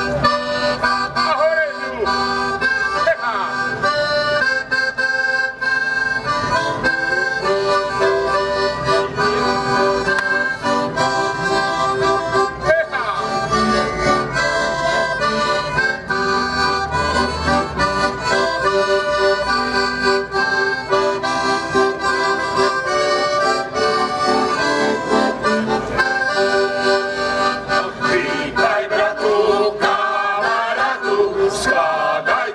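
Accordion playing a folk tune in held chords, an instrumental interlude between sung verses. Near the end a group of mainly male voices comes back in singing.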